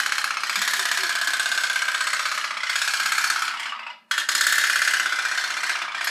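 Candle-powered pop-pop (putt-putt) toy boat running, its heated boiler diaphragm giving a loud, fast, steady buzzing rattle, a humming sound. It cuts out for a moment about four seconds in, then starts again.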